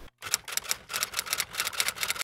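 Computer keyboard being typed on: a quick, irregular run of light key clicks, about nine a second, for a second and a half.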